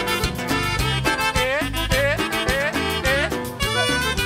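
Live norteño band with saxophone playing an instrumental passage: saxophone and button accordion carry the melody with gliding runs over electric bass, congas and drums keeping a steady beat.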